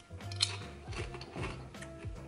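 A crisp being bitten and chewed, a run of short crunches, over quiet background music.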